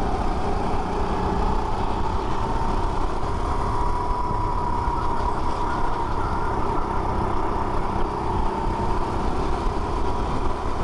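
Go-kart engine at racing speed, heard from the kart itself. Its note rises over the first few seconds and then holds steady over a continuous low rumble.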